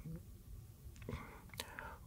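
Faint breath from a man pausing between sentences, with a small mouth click shortly before he speaks again.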